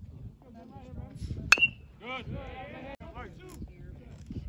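A single sharp metallic ping of a metal baseball bat hitting a pitched ball, about a second and a half in, with a short high ring after it. Voices call out around it.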